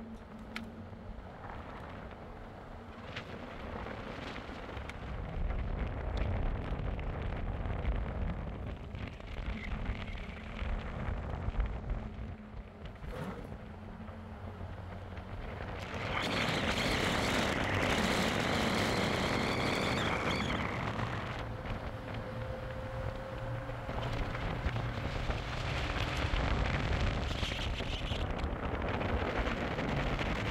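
A vehicle driving on a paved road: low engine rumble mixed with wind and road noise, which grows louder and rougher from just past the middle for about five seconds, with a faint whine on top.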